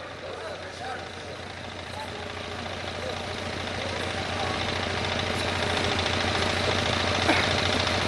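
Steady low hum with hiss in the background, slowly growing louder, with no clear voice over it.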